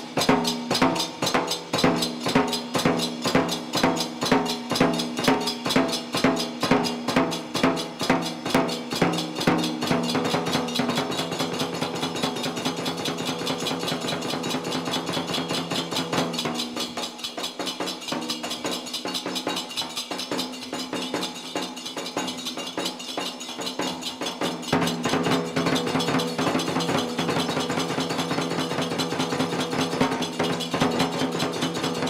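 Nanbu kagura accompaniment: a large taiko drum and small hand-held bronze cymbals (tebiragane) keep a fast, even beat, with a held note sounding under it. The strokes are crisp for the first ten seconds, blur and soften through the middle, and sharpen again near the end.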